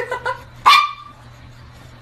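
Small long-haired dog giving one sharp, high-pitched bark a little under a second in, after a few short softer yips.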